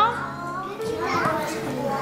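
Young children's voices chattering softly, with a brief voiced call about a second in.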